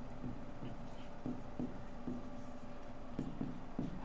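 Faint taps and short strokes of a pen writing a word by hand on a board, in small irregular bursts.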